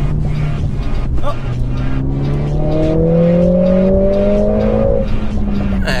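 Mercedes-AMG A45 S's 2.0-litre turbocharged four-cylinder engine accelerating hard, heard from inside the cabin, its note rising steadily in pitch over a few seconds.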